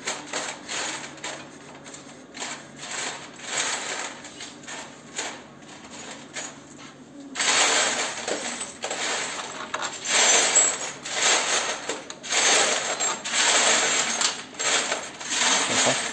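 Metal clinking and rattling from a motorcycle exhaust muffler and its fitting hardware being worked into place by hand. The clatter becomes louder and busier about halfway through.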